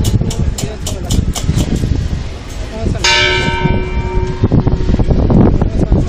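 A bell struck once about three seconds in, ringing with many overtones for about a second and a half before dying away. Around it is the noise of a dense procession crowd.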